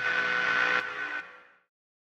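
Closing held chord of an indie rock song, guitar and noise ringing on at steady pitch, then fading out and cutting to silence about a second and a half in.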